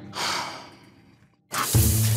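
A short breathy exhale that fades away, then, about one and a half seconds in, the sudden hiss of a shower head spraying water.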